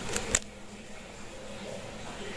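Tiny electric rotor motor of a toy RC helicopter cutting out on a nearly flat battery: a faint whir with two short clicks, stopping about half a second in, then only faint room noise.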